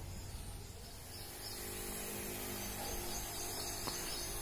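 Steady outdoor background noise with an even high hiss, like insects or field ambience, settling in about a second in.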